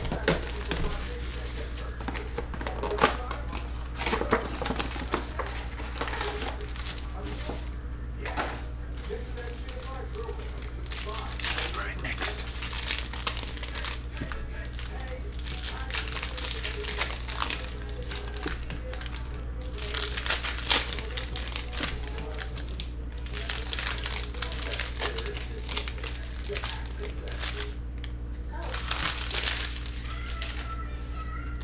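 Plastic wrapping and foil trading-card packs crinkling in irregular bursts as a card box is unwrapped and its packs are handled, over a steady low hum.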